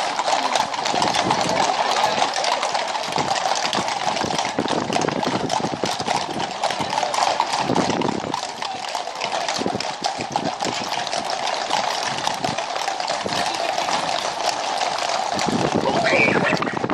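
Many horses walking on a tarmac road, their hooves clip-clopping in a dense, continuous overlapping clatter.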